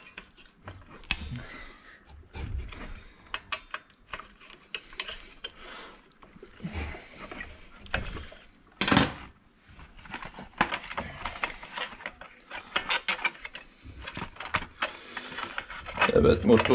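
Screwdriver, screws and plastic parts clicking and tapping against a brush cutter's engine housing as it is put back together, in irregular clicks with one louder knock about nine seconds in.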